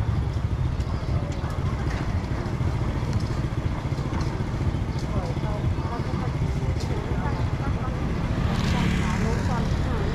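Busy market-street ambience: a steady low rumble of traffic and motorbikes with scattered voices of people around. About eight and a half seconds in, a vehicle passes closer and the sound swells for about a second.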